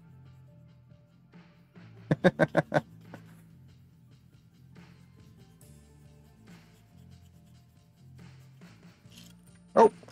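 A man laughing, a quick run of about six 'ha's about two seconds in, over low background music.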